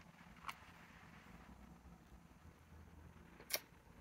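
Near-silent room tone with two small clicks: a faint one about half a second in and a sharper one near the end as a hand takes a small plastic-capped ink sample vial off the table.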